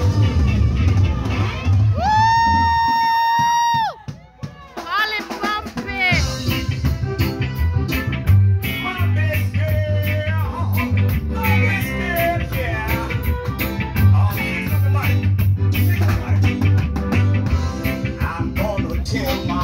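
Live reggae band playing through a PA, with a heavy bass line and drums. About two seconds in, a long high held tone sounds; the band then drops out briefly under a run of quick rising whoops before coming back in.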